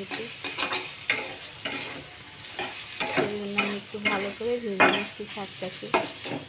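A metal spatula stirring and scraping red amaranth greens frying in oil in a steel kadai: a steady sizzle broken by repeated quick scrapes against the pan.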